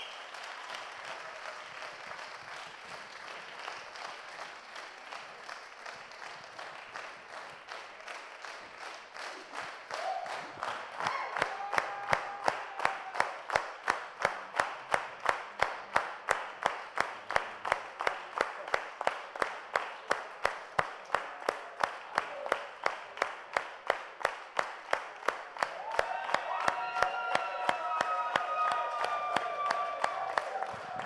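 Audience applause. From about ten seconds in, a single pair of hands claps close to the microphone at a steady rhythm of roughly three claps a second, louder than the crowd's applause beneath it.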